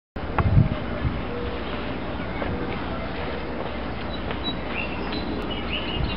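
Steady outdoor background rumble and hiss, with a few loud knocks about half a second in and faint, short high chirps later on.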